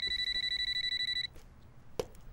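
Telephone ringing with a high electronic trilling ring, a rapid warble, that stops a little over a second in.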